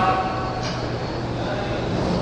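Steady background noise with a low, even hum, filling a pause in speech.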